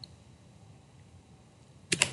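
Two quick computer mouse clicks close together near the end, after a faint click at the start, over quiet room tone.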